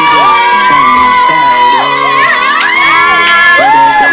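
Several women shrieking and squealing in excited greeting at once, long high held cries that rise and fall.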